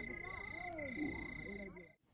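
Night frog chorus: many short, overlapping croaking calls, with a steady high-pitched tone that breaks off briefly every half second or so. It all cuts off abruptly near the end.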